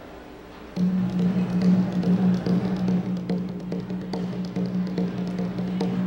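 Symphony orchestra with percussion starting a piece about a second in: a loud held low note with quick, sharp percussion strokes over it.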